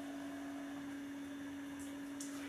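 A steady low hum: one constant tone, unchanging throughout, over faint room tone.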